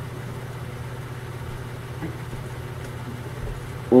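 Steady low background hum, with a brief spoken word right at the end.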